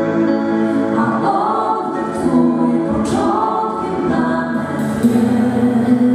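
A mixed vocal group singing a Polish worship song in harmony into microphones, holding long chords that change every second or so.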